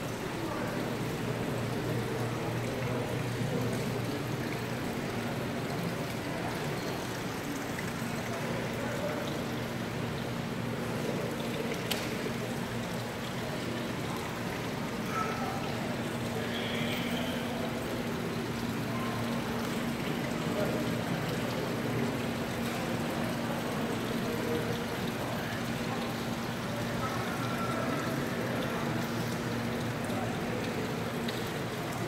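Steady trickle and splash of a stone wall fountain, with faint voices of other people and a low steady hum underneath.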